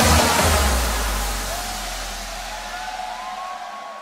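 Loud hardstyle dance music whose pounding kick drum stops just after the start, leaving a fading bass tone under a broad haze of festival crowd noise with a few short rising whistle-like tones, all fading out steadily.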